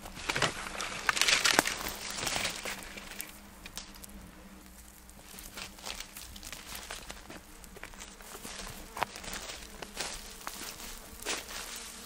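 Footsteps and rustling on dry eucalyptus leaf litter and dirt, loudest in the first three seconds, then quieter with a few scattered sharp clicks.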